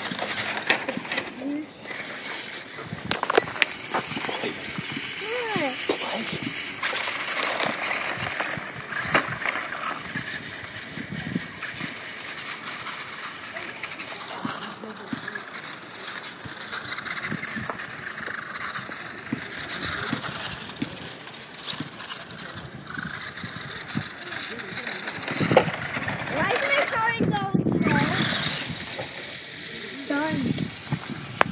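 Small electric RC truck driving over cracked asphalt and gravel, its motor running and tyres on grit, with clicks and knocks throughout. Children's voices and shouts sound over it, loudest near the end.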